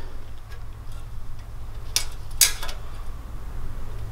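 Tape measure against the steel tube frame of a go-kart: two sharp metallic clicks about half a second apart, a couple of seconds in, with a few faint ticks, over a steady low hum.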